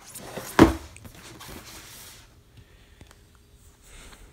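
Cardboard box being turned over and handled, with one sharp thump about half a second in, then rustling and scraping that fades after about two seconds, leaving a few faint clicks.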